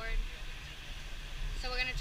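Steady beach background noise: wind rumbling on the camera microphone with a wash of surf. A woman's voice trails off at the start and resumes near the end.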